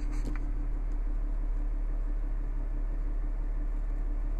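Steady low hum of the Toyota FJ Cruiser's 4.0-litre V6 idling, heard from inside the cabin, with a faint click shortly after the start.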